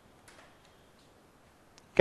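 Quiet room tone with a few faint taps of a stylus on a tablet screen, one about a third of a second in and a small click near the end.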